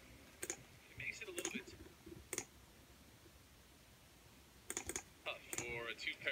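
A few faint, sharp clicks about a second apart, then a quick cluster of clicks near the end, like keys or a trackpad being pressed, with faint speech in the background.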